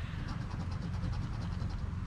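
A coin scratching the coating off a paper Gold Rush Classic scratch-off lottery ticket in rapid, even back-and-forth strokes, around ten a second.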